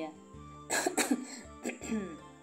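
A person coughing, a few harsh coughs about a third of the way in and a shorter one near the end, as if choking on a drink that went down the wrong way. Soft background music continues underneath.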